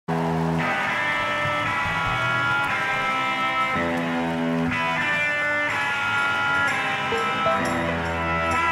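Live band music: sustained chords that change about once a second, at a steady level.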